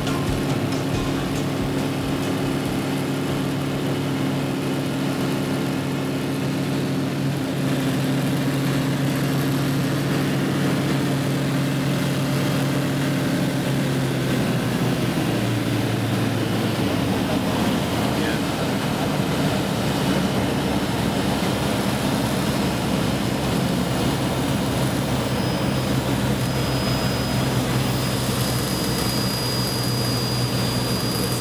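Ford V8 engine of a Zenith CH801 bush plane heard from inside the cockpit in flight, a steady drone with propeller and wind noise. About halfway through its pitch drops and stays lower, as power comes back with the runway ahead.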